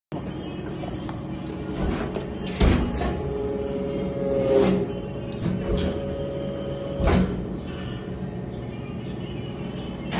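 Hydraulic press brake running: a steady hum from its hydraulic pump, with a series of clunks as the ram moves. In the middle, a steady higher whine holds for a few seconds while the punch presses a steel strip into the die, ending with a clunk.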